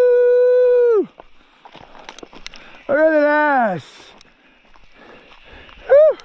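A man's voice holding a long steady yell, a drawn-out "heyyy" that ends about a second in, then a second whooping call about three seconds in, just under a second long, that drops in pitch as it ends.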